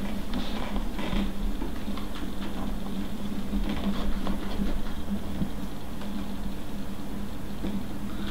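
A steady low hum runs throughout, with a few faint, scattered clicks.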